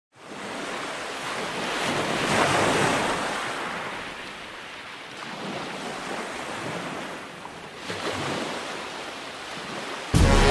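Ocean waves surging, a steady wash of water that swells about two seconds in and again near eight seconds.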